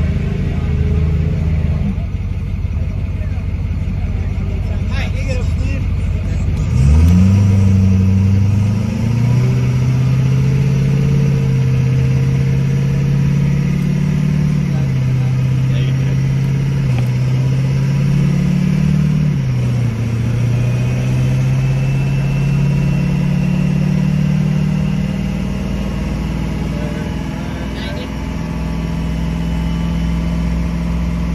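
A race car's engine idling, then rising sharply in pitch and loudness about seven seconds in and running at a fast idle, its revs stepping up and down several times.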